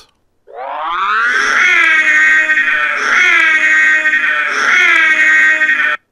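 A voice imitating the Ecto-1's siren: a wail that climbs at the start, then holds, swooping upward about every second and a half.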